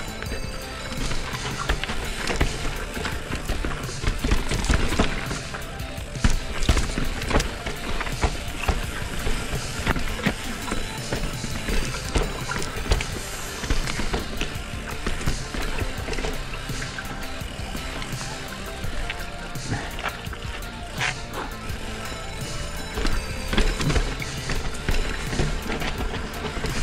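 Downhill mountain bike clattering and rattling over roots and ruts on a dirt trail at speed, with many irregular knocks, tyre noise and wind on the helmet camera, under background music.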